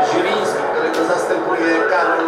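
Television broadcast of a football match: a commentator talking over steady stadium crowd noise.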